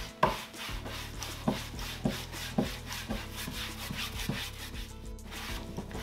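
Round wax brush scrubbing white wax into a chalk-painted wooden tabletop, the bristles rubbing in short strokes roughly every half second. There is a brief pause about five seconds in.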